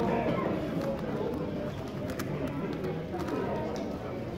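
X-Man Galaxy v2 Megaminx turned rapidly by hand, its plastic faces clicking in quick irregular runs, over a steady murmur of voices in a large room.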